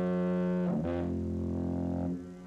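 Diaphone foghorn sounding its two-tone blast. A steady higher tone breaks off about three-quarters of a second in and drops into a lower, deeper tone that stops just after the end.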